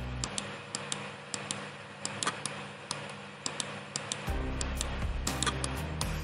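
Rapid computer mouse clicks, about two to three a second, over background music. The music's low sustained notes drop out for about four seconds and come back near the end.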